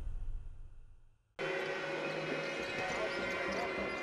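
Intro music fading out, a brief moment of dead silence, then the sound of a basketball game in an arena starts about a second and a half in: steady crowd noise with the ball bouncing on the court.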